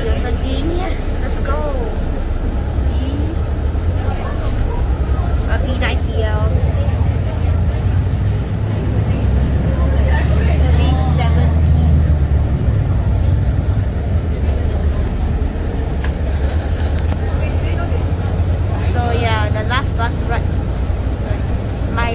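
City bus's diesel engine and road noise heard from inside the passenger cabin as the bus moves off and gets under way, a steady low rumble that swells for a few seconds in the middle.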